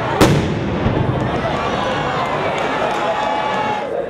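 A single sharp, loud bang of a signal firework just after the start, then a steady crowd din with voices over it.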